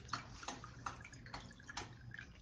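Faint background noise, a low hum and hiss, with a few light, irregular ticks.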